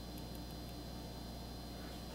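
Quiet room tone with a low, steady electrical hum; the pipetting itself makes no distinct sound.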